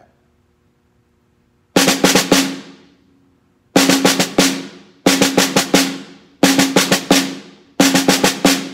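Snare drum played with sticks: a string of five-stroke rolls, each a quick cluster of hits (double bounce, double bounce, tap) with the drum ringing and fading after it. After a short silence, five rolls come about every second and a half, all led with the right hand.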